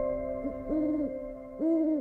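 Tail of the podcast's closing jingle: a held electronic chord with two short, hoot-like pitched notes about a second apart, the second louder.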